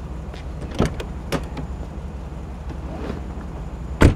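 A car idling with a steady low hum. A few sharp clicks of a car door being opened come about a second in, and a door shuts with a loud knock at the very end.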